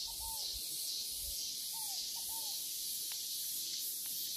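A steady high-pitched insect chorus pulsing about three times a second, with a few short arched bird calls in pairs near the start and about two seconds in.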